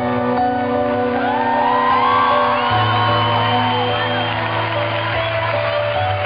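Live band music in a concert hall: held chords over a bass line that shifts note a couple of times. Whoops from the audience rise and fall over the music through the middle.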